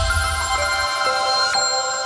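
Channel logo sting music: sustained electronic notes ringing on, several held over one another, with a new note coming in every half second or so.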